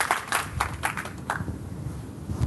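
Audience applause, thinning out and stopping about a second and a half in, followed by low, muffled rumbling.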